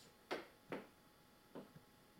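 Sharp taps marking a slow beat before an unaccompanied song: two clear taps in the first second, then fainter ones, setting the tempo.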